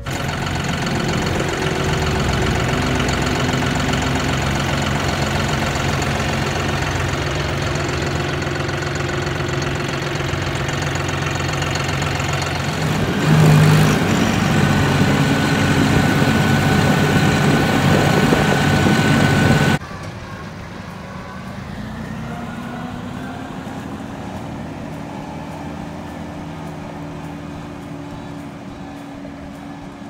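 New Holland farm tractor's diesel engine running steadily as the tractor travels, briefly louder around the middle. After an abrupt cut about two-thirds of the way through, a quieter tractor engine runs with its pitch slowly rising.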